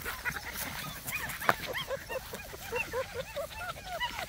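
Several puppies whining and yipping: many short, high, rising-and-falling cries that overlap one another.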